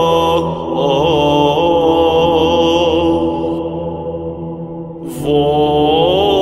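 Orthodox church chant as background music: a melismatic sung line over a steady held drone note. The phrase tails off about four seconds in, and a new phrase begins just after five seconds.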